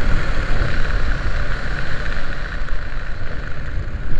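Loud, steady wind rush buffeting the microphone during a skydiving freefall, deep and rumbling with a hissing edge.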